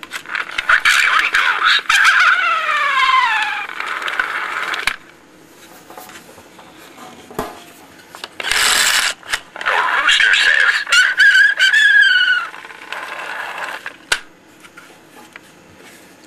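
See 'n Say toy's spring-driven phonograph mechanism playing its little record through the needle and cone diaphragm: a thin, tinny recorded voice and animal call with sliding pitch, heard twice, about five seconds and then about four seconds long. A sharp click comes near the end.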